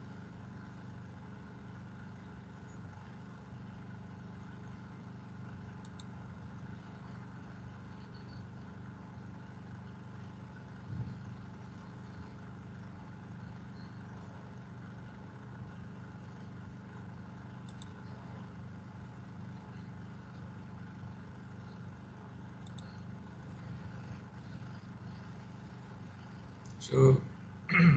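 Steady low hum with a light hiss, picked up on an open video-call microphone, with a soft knock about eleven seconds in.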